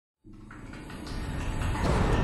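A low rumble that starts a moment in and swells steadily louder, the rising opening of a trailer's music and sound design.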